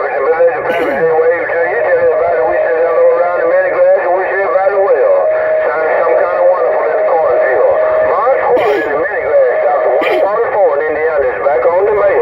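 A distant station's voice coming in over long-distance skip on the 27.025 MHz CB channel through a Uniden Grant XL's speaker: thin and radio-filtered, warbling and hard to make out. A steady whistle sits under the voice through the middle of the transmission.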